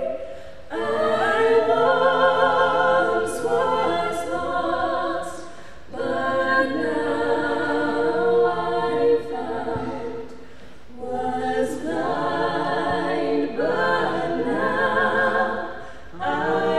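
Three women singing together a cappella, unaccompanied, in three sung phrases with short pauses for breath between them.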